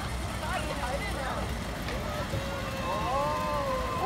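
Voices of children and adults calling and chattering across a playground, over a steady low rumble of outdoor background noise.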